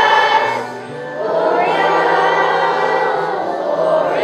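Elementary school children's choir singing together, with a brief dip between phrases about a second in, then a long held phrase.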